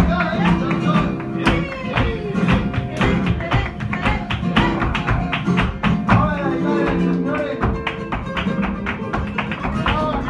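Live flamenco: Spanish guitars strummed and plucked under a stream of sharp percussive hits from hand-clapping (palmas) and the dance, with a male voice singing at times.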